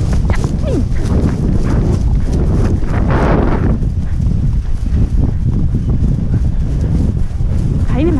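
Hoofbeats of several horses cantering on grass, under heavy wind rumble on the microphone.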